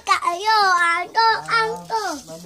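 A young child singing in a high voice, holding long drawn-out notes.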